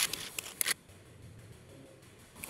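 A run of sharp clicks and rattles from a sound-making art exhibit, stopping under a second in; the rest is quiet.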